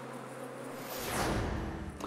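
Honeybees buzzing steadily for about the first second, then a falling whoosh that sweeps down in pitch over a low rumble.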